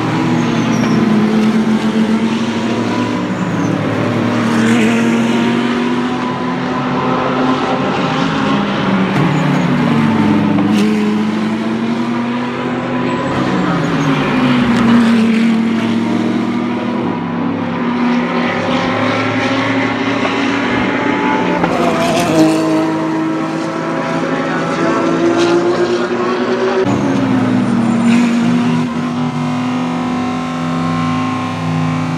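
GT race cars' engines passing through a corner, one after another. The engine note falls and then climbs again several times as the cars brake, shift gears and accelerate out. It steps sharply up about two-thirds of the way in and drops again near the end.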